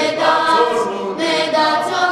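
Romanian youth choir of children and young women singing a folk song together, several voices holding long notes.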